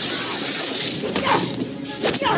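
A glass pane shattering: a loud crash and a spray of breaking glass that dies away over about the first second.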